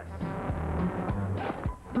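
Commercial background music with a steady bass line and drum hits.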